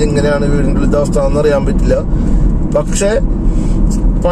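A voice talking over the steady low rumble of a car driving at highway speed, heard from inside the cabin.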